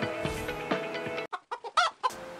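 Comedic chicken squawk sound effect: background music cuts off suddenly, then three short clucks and a louder, longer squawk near the end.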